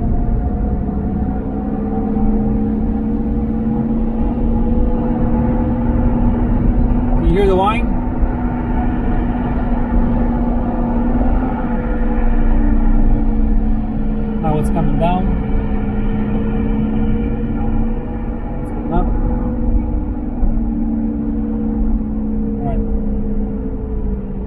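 Cabin of a 2007 Toyota 4Runner V8 cruising at highway speed: a steady road and drivetrain hum whose pitch rises and falls slightly, over a low rumble. It carries a noise that the owner hears and that gets louder the faster he goes.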